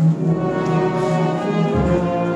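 Brass band playing a slow piece in long held chords, with a deeper bass note coming in near the end.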